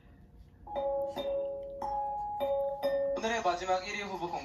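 Audio from a TV music-show clip: a slow run of clean, held chime-like tones changing note about every half second, then a voice speaking over the music near the end.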